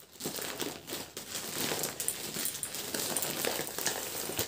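Brown kraft-paper parcel wrapping crinkling and rustling in an irregular crackle as it is handled and pulled open around a packet of diapers.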